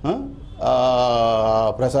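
A man's voice drawing out one long vowel at a steady pitch for about a second, in a pause between phrases, before his speech picks up again near the end.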